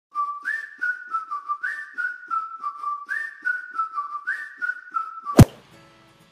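Intro jingle: a whistled tune repeating a short rising phrase four times over a steady clicking beat. It ends with a single loud hit about five and a half seconds in.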